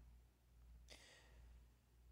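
Near silence: room tone, with one faint breath from the narrator about a second in.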